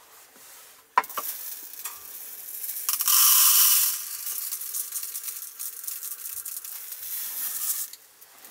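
Dry uncooked rice pouring from the spout of a plastic rice dispenser into a small clear plastic cup. The grains make a steady rattling hiss that starts with a click about a second in, is loudest around three to four seconds in, and stops near the end.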